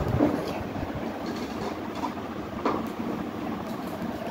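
Low, steady background noise with faint rustling from a phone being moved and handled, and a soft click a little past the middle.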